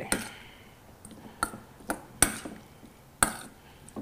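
A metal spoon clinking against a stainless steel mixing bowl as food is stirred: about five sharp, separate clinks, the loudest a little past the middle.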